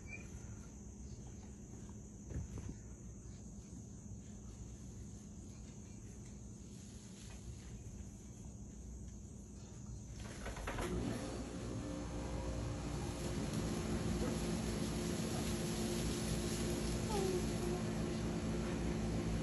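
Faint room tone, then about ten seconds in a steady machine hum with a hiss of noise starts and runs on.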